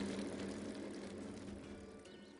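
The tail of an end-card sound effect fading away: a hissy, ringing wash that dies down steadily.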